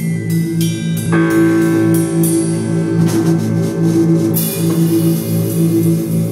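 Live instrumental synthesizer-and-drums music: a pulsing synthesizer line over drum kit hits and cymbals. A held synth tone comes in about a second in, and a cymbal wash from about four and a half seconds.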